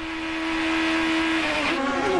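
Onboard sound of a Toyota Atlantic open-wheel race car's engine held at a steady high note at full throttle down a straight. About a second and a half in, the note drops and wavers.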